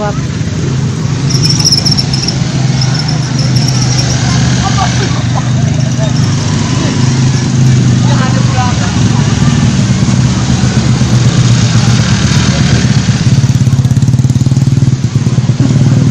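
Small motorcycle engines running steadily as scooters ride through a flooded street, with voices in the background.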